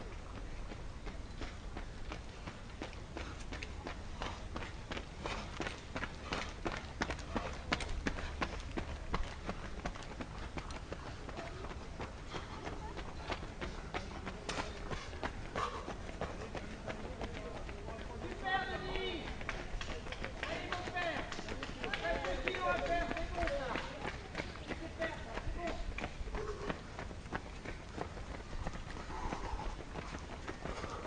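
Runners' footfalls on the asphalt road, a quick series of sharp footsteps through the first half, then people's voices talking from just past the middle.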